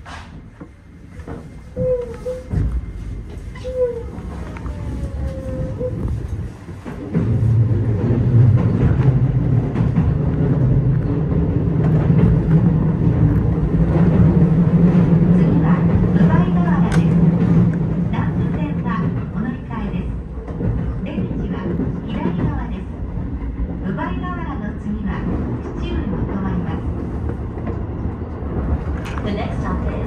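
Keio 8000-series electric train pulling away and running at speed, heard from inside the driver's cab: motor whine and wheel-and-rail noise. It gets markedly louder about seven seconds in.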